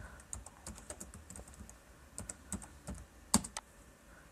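Computer keyboard being typed on: soft, irregular key clicks, with one louder click about three and a half seconds in.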